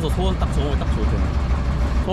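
Steady low rumble of a small river tour boat's engine running, with voices over it.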